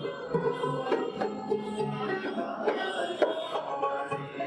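Several dotaras, long-necked Bengali folk lutes, plucked together in a folk tune, with a small hand drum beating a rhythm underneath.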